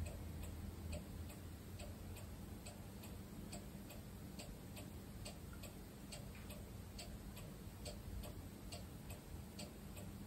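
Faint, steady ticking, about two even ticks a second, in a quiet room.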